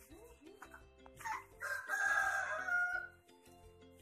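A rooster crowing once, about a second in: one long call of about two seconds that is the loudest sound here, over quiet background music.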